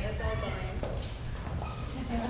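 Voices of a group of people talking over each other in a large room.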